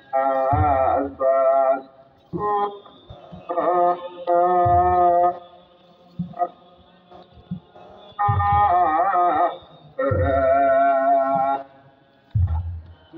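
Ethiopian Orthodox hymn (mezmur) chanted in loud phrases about a second long with short pauses between them, and a longer lull around the middle. Deep kebero drum beats fall at the start of several phrases.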